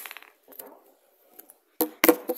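Handling noise from a phone being moved and grabbed: a few light clicks and rubs, mostly quiet, with a sharper knock near the end.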